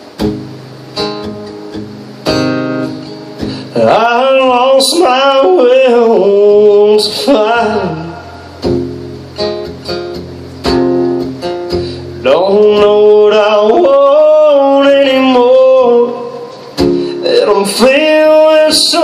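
Solo acoustic guitar strummed at a slow pace, its chords ringing. A man sings over it in two long phrases: one from about four seconds in, the other from about twelve seconds in, with guitar alone in between.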